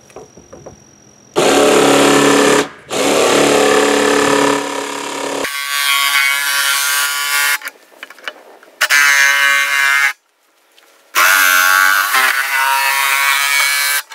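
Cordless drill boring through the plastic lid of a 55-gallon barrel in two short runs. It is followed by a cordless jigsaw cutting the plastic in three bursts of a couple of seconds each.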